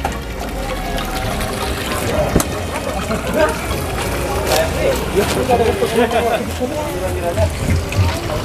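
Indistinct voices of several people talking, over a steady low hum.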